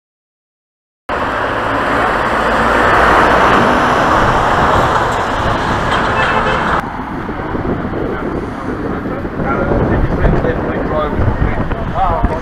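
Steady road and engine noise of a car driving, heard from inside the cabin, starting suddenly about a second in. About seven seconds in it drops abruptly to a lower rumble.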